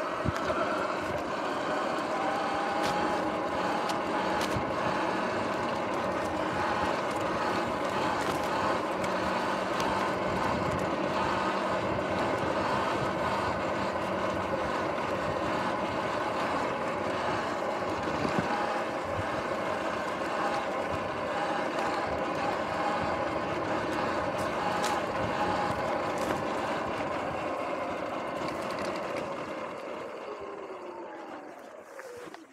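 Electric dirt bike's motor and drivetrain whining at a steady pitch while riding over a grassy dirt trail, with tyre and trail noise underneath. Near the end the whine falls in pitch and gets quieter as the bike slows.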